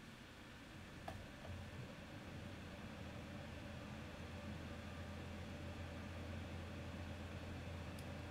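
Faint steady low hum with background hiss, growing slightly louder, and one small click about a second in.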